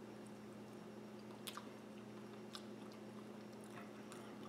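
Faint chewing of a mouthful of soft, over-easy fried duck egg, with a few soft mouth clicks about one and a half, two and a half and almost four seconds in, over a steady low hum.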